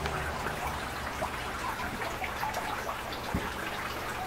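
Water trickling and splashing steadily in an aquaponic system, with many small drips over a low steady hum. A soft thump comes a little after three seconds in.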